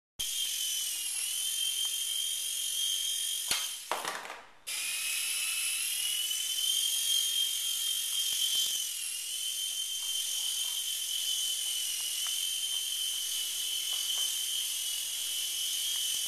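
Toy remote-control micro helicopter's small electric rotor motors whining high and steady, the pitch dipping and rising slightly with throttle. About four seconds in the whine falls away briefly, then comes back abruptly.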